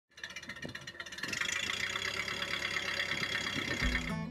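Film projector sound effect: a steady mechanical whirring clatter that builds up over the first second and a half and then runs evenly. Guitar music comes in right at the end.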